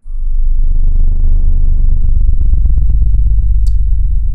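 Loud, distorted electronic bass drone with a buzzing rattle, starting abruptly.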